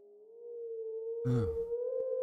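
A steady, eerie drone tone sets in, slides up a little in pitch and then holds, like an added horror soundtrack. About a second in, a short low rough burst about half a second long sounds over it.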